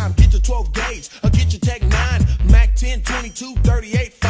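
Hip hop track playing: rapped vocals over a beat with long deep bass notes and drum hits.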